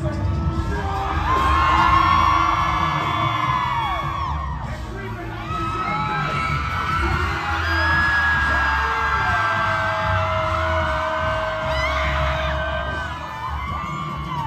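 Live concert: amplified music with a heavy bass, and a crowd screaming and whooping over it, with long held notes.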